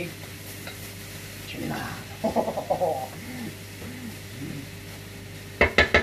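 A spatula stirring chilli con carne in a frying pan, scraping through the mince and beans over a low sizzle. A few sharp knocks come just before the end.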